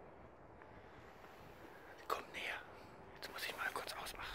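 A man whispering a few words close to the microphone, once about two seconds in and again near the end, over a quiet background.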